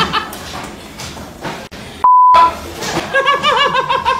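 A single steady high-pitched beep, a censor bleep, about two seconds in and lasting under half a second, with all other sound cut out beneath it. Around it, people laugh, louder again near the end.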